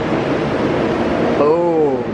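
Steady rushing background noise from the surroundings. Near the end comes a short drawn-out vocal sound from a man, rising and then falling in pitch.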